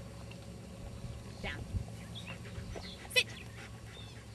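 A woman's spoken dog commands, 'Down' and then a sharper 'Sit', over a steady low background rumble.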